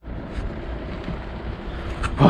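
Wind buffeting the camera's microphone: a steady low rumble and hiss, with a faint steady hum underneath.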